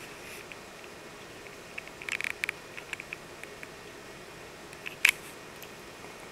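Faint handling clicks and taps over steady room hiss: a small cluster about two seconds in, a few lighter ticks after it, and one sharper click near the end.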